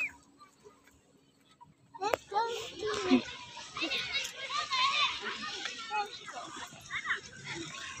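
About two seconds of near silence, then many children's voices in the background, chattering and calling out as they play.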